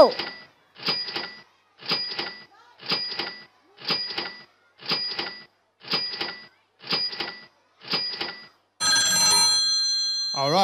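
Quiz software's countdown timer sound effect: a short tick-like beep once a second, nine in a row, then a longer ringing, many-toned chime near the end that signals time is up.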